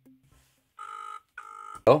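Telephone ringback tone heard from the Soyes 7S+ credit-card phone as an outgoing call rings: one British-style double ring, two short steady buzzes a fraction of a second apart, starting about a second in.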